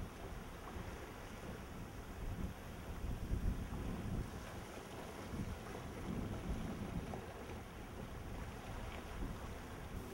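Low, uneven rumble of wind on the microphone out on the water, a little louder around three to four seconds in.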